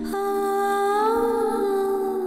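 Background score: one long hummed vocal note over a steady drone, its pitch lifting slightly about a second in and easing back down.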